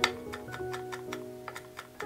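Chef's knife chopping pistachios on a wooden cutting board: quick sharp taps, about four a second, the first the loudest and the rest lighter. Background music plays underneath.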